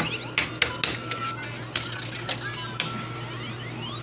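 Electronic game music and sound effects from a Lego Mario figure's small speaker while its course timer runs, over a steady low hum. The sound is broken by a string of sharp clicks and knocks.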